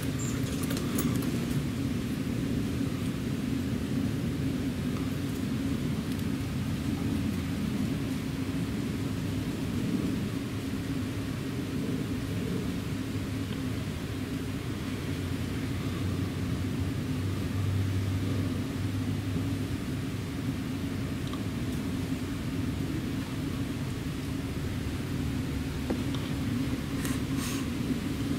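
Steady low rumble of background noise with no clear changes, like distant traffic or machinery; a few faint clicks about a second in.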